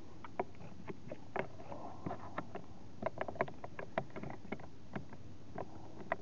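Irregular small plastic clicks and taps as an OBDeleven dongle is pushed into a car's OBD-II port under the dashboard.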